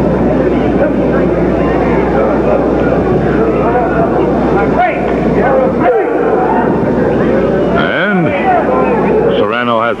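Arena crowd noise: many voices shouting and chattering at once over a steady low hum, with one voice calling out about eight seconds in.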